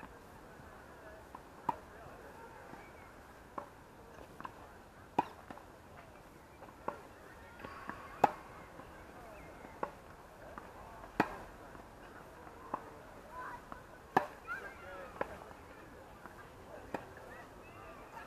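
Tennis rackets striking the ball during a rally: sharp pops about every one and a half to two seconds, some loud and close, some fainter.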